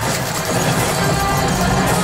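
Flight-simulator ride soundtrack in the Millennium Falcon cockpit: music over a steady low engine hum as the ship's systems power up.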